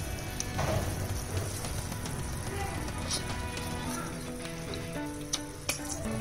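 Mushrooms in sauce sizzling softly in a pan under gentle background music of held notes, with a few light clicks.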